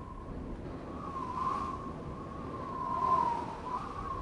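A single held high note from the cartoon's background score, wavering gently in pitch and swelling twice, over a low rumble.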